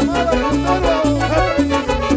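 Live cumbia band playing an instrumental passage: electric bass stepping through a bass line under a melody line, with drums keeping a steady cymbal tick several times a second.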